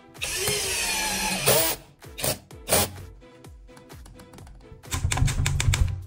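Electric screwdriver driving a screw into a concealed cabinet hinge's mounting plate for about a second, its whine falling in pitch as the screw tightens. Two sharp clicks follow, then a fast run of clicks near the end, over background music.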